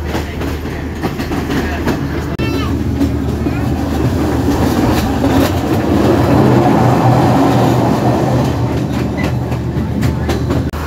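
Passenger train running, heard from inside the carriage by the window: a steady loud rumble of wheels on the rails with irregular knocks as the wheels pass over rail joints.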